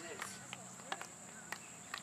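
Field hockey sticks tapping balls on artificial turf: a few sharp, separate clacks spread through the two seconds.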